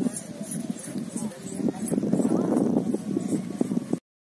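Khillari bull's hooves pounding on soft ploughed soil as it gallops, a quick run of knocks, with people shouting over it. The sound cuts off suddenly at the end.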